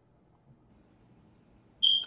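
Near silence, then near the end one short, high-pitched electronic beep.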